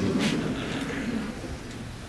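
Congregation laughing, a diffuse murmur of laughter that dies away over about two seconds.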